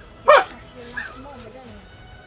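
A woman's short, sharp exclamation, "Huh!", followed by a faint murmur.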